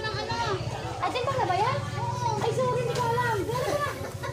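Speech: high-pitched voices talking, with a steady low hum underneath.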